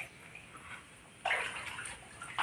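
Shallow water on a room floor sloshing, starting suddenly a little past halfway and tapering off.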